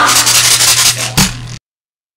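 Drum kit with the song's backing track: a rapid run of hits under a cymbal wash, then one low drum hit just after a second in. Then the sound cuts off abruptly into silence.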